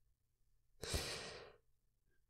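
A man's short sigh: one breathy exhale about a second in, fading out within about half a second.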